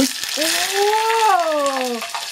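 Boiled cicada larvae dropped into a pot of hot oil: a sudden splash-in, then a steady, loud frying sizzle. He wonders whether the oil is too hot or the larvae are still wet from boiling.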